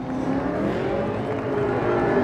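Drift car spinning donuts, its engine held high with the rear tyres spinning against the track, the pitch swelling and easing gently.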